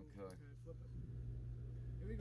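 Quiet room tone with a steady low hum, and a brief faint voice just after the start.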